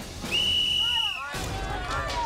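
A whistle blown once in a long steady blast of about a second, signalling the start of the round. Shouting voices follow, with a low rumble rising near the end.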